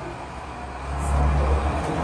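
A low steady rumble that swells about a second in.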